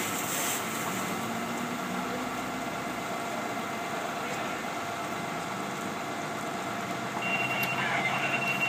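Steady running noise of a fire engine's diesel engine working its pump at a vehicle fire, with a broad hiss over it. A thin high-pitched tone comes in near the end.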